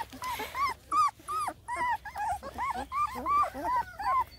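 Two-week-old black and tan coonhound puppies whimpering: a run of short squeaky whines that rise and fall in pitch, about three a second.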